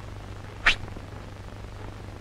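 A steady low hum with one short, sharp swish about two-thirds of a second in.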